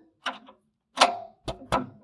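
A wrench tightening the nut that holds a change gear in a lathe's gear train, giving four short metallic clicks, the loudest about a second in.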